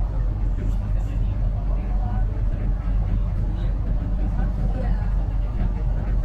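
Steady low engine hum at a constant pitch, with traffic noise and faint voices behind it.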